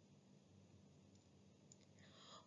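Near silence: faint room tone in a pause of the narration, with a few very faint clicks near the end.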